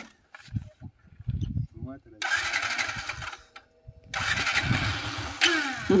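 A motorcycle engine starting, then revved in three loud bursts, each stopping sharply, as the bike takes up the strain of a tow rope on a car.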